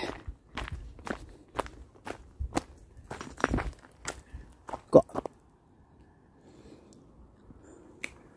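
Footsteps of a walker on a hiking footpath, about two steps a second, stopping about five seconds in.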